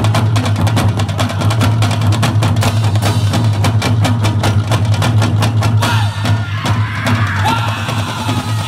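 An ensemble of large barrel drums beaten with sticks in a fast, dense rhythm over a steady low drone; about six seconds in the drumming thins out.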